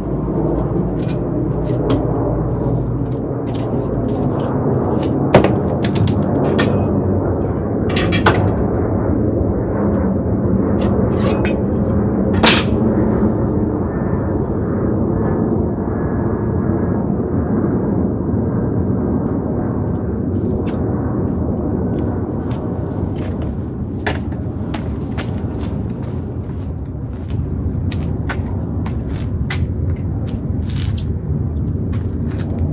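Scattered sharp clicks and knocks from hand work on an aluminium-profile frame, the loudest about 5, 8 and 12 seconds in, over a steady low rumble.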